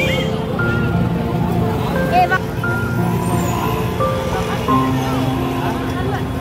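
Busy street crowd: many voices chattering over music and passing traffic, with no single sound standing out.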